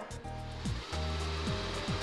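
Background music with a stepping bass line, over the steady whir of a Dreame D10s Pro robot vacuum's suction fan as it moves off its dock at the start of a cleaning run.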